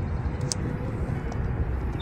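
Steady low outdoor rumble with one brief click about half a second in.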